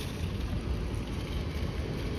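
Metal shopping cart rolling over concrete sidewalk, its wheels giving a steady low rattling rumble.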